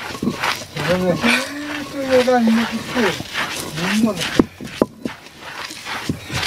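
A voice in long, wavering held notes, without clear words. Under it is the scraping of a rocking stone grinder crushing sprouted maize (guiñapo) on a stone batán, with a few sharp knocks about four and a half seconds in.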